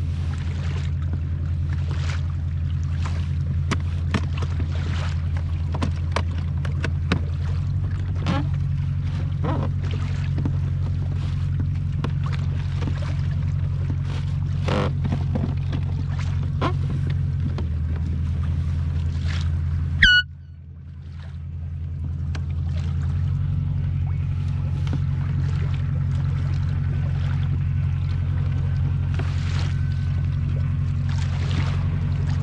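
A boat motor drones steadily at a low pitch, with small water splashes and knocks against the kayak's hull. About two-thirds of the way through there is a sharp click, and the drone briefly drops away before it builds back up.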